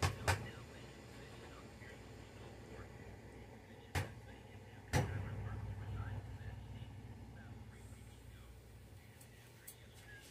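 Sharp clicks of an airbrush air-pressure regulator being turned down to about 20 PSI: a few light clicks at the start, then two louder ones about a second apart, the second followed by a low hum that slowly fades.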